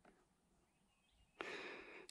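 Near silence, then about one and a half seconds in a faint steady hiss begins.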